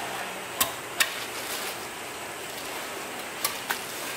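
Four sharp clicks of butchers' knives working through sides of pork on a steel table, two in the first second and two close together near the end, over a steady background hiss.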